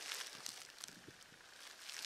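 Faint, uneven rustling and crackling of dry leaf litter, as from footsteps or shifting feet.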